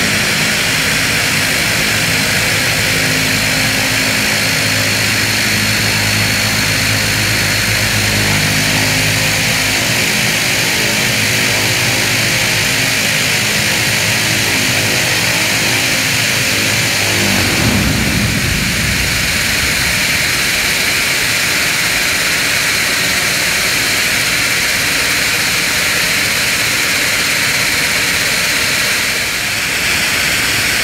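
A QantasLink Dash 8-300's two Pratt & Whitney Canada PW123 turboprops idling on the stand with a steady propeller hum, then shut down a little past halfway, the hum falling in pitch and dying away within about two seconds. A steady high hiss carries on after the engines stop.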